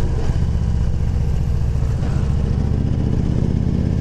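Victory touring motorcycle's V-twin engine running under way while riding, a steady low engine note with no break.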